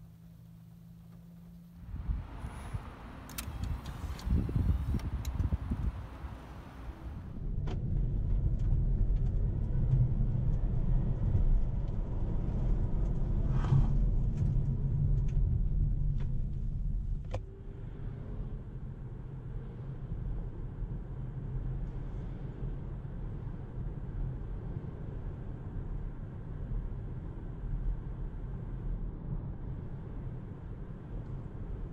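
Cabin noise of a 2019 Nissan Leaf SL Plus electric car being driven: a steady low road and tyre rumble with no engine note. It is loudest in the middle stretch and settles to a quieter steady rumble after a sudden change about two thirds of the way in. A faint hum comes before it, and a few clicks about two to seven seconds in.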